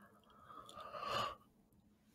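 A man sighing close to the microphone: one breathy exhale that builds over about a second and stops abruptly.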